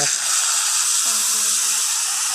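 Dental suction running inside the mouth, a steady high hiss of air being drawn through the tip.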